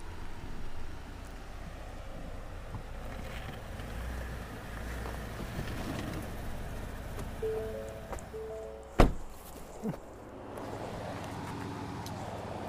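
Background music over the low, steady rumble of a Ford F-150 pickup's engine as it creeps up a dirt slope. A single sharp knock about nine seconds in is the loudest sound, with a smaller one about a second later.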